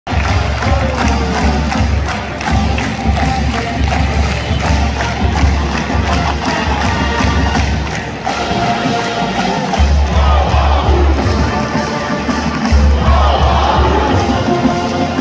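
College marching band playing on the field with a steady drumbeat, over the noise of a stadium crowd cheering.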